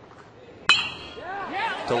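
A metal baseball bat striking a pitched ball about a second in: one sharp ping with a short ring.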